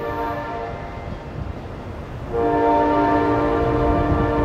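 Air horn of an Amtrak train's GE Genesis locomotive sounding a chord of several steady tones: one blast trails off right at the start, then a louder, longer blast begins a bit over two seconds in. Under it runs the low rumble of the passing train.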